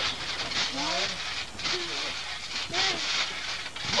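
Short wordless shouts and exclamations from young people, over a rustling noise that comes and goes in bursts.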